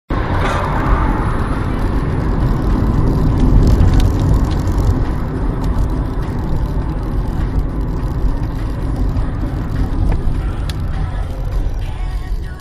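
Steady low rumble of road and engine noise heard from inside a moving car as it drives along at speed.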